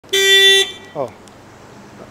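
A single short car horn honk, a steady blast of about half a second, followed about a second in by a man exclaiming "oh".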